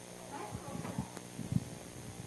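Three dull low thumps, the last the loudest, over faint murmuring voices in a lecture hall.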